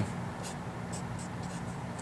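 Sharpie felt-tip marker writing on paper: faint short strokes of the tip as a number and a symbol are written, over a low steady room hum.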